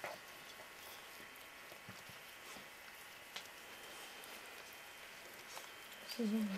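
Newborn working cocker spaniel puppies suckling at their mother while she licks them: a few faint, sparse wet clicks over a low steady hiss.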